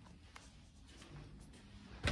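Near silence: small-room tone with a few faint ticks and light rustling.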